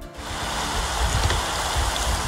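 Rain falling on open water: a steady, dense hiss of drops striking the surface.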